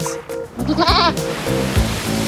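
A goat bleats once, a short wavering call about half a second in, over cheerful children's music, followed by a rushing whoosh.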